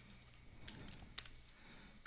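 A few faint computer keyboard keystrokes, spaced irregularly, as a short command is typed.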